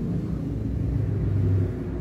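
A steady low rumble with a deep hum and no speech over it.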